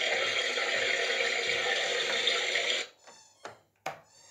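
Water running steadily, rinsing shampoo out of a toy's fur. It shuts off abruptly about three seconds in, followed by a few light knocks.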